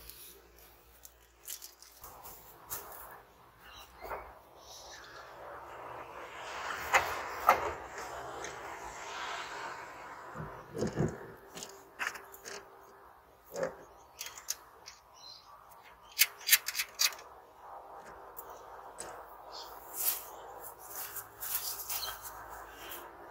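Scattered knocks and clicks as a towing mirror's base and mounting studs are worked into place against a Toyota Land Cruiser 100 Series door's bare metal shell, hands working inside the door. A rushing noise swells and fades about six to ten seconds in.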